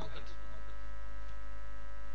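Steady electrical mains hum and buzz from the microphone and sound system, a deep low hum with a string of thin steady overtones above it; the tail of the voice fades out just at the start.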